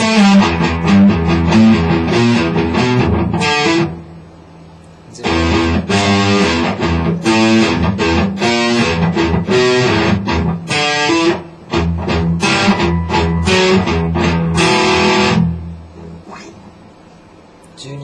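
Electric guitar playing an E minor étude: quick runs of single picked notes. The playing stops for about a second some four seconds in, then resumes, and dies away over the last two seconds.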